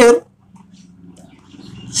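A man's voice finishing a word, then a pause filled by a faint, steady low hum that grows slightly louder before he speaks again.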